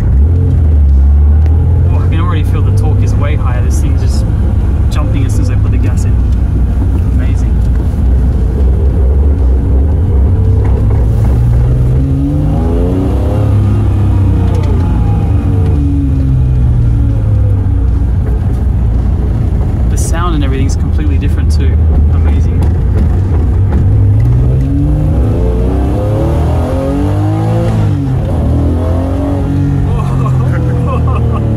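Honda NSX-R (NA2) V6 heard from inside the cabin, driven hard through the gears: the engine note climbs and falls in two sweeps, one around the middle and one near the end, with a few short clicks along the way.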